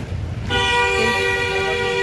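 A vehicle horn sounding one steady honk, starting about half a second in and lasting about a second and a half, over a low street rumble.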